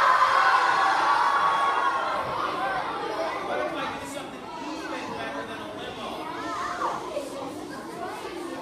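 A large crowd of children shouting together, loudest for the first couple of seconds and then settling into a mix of excited chatter.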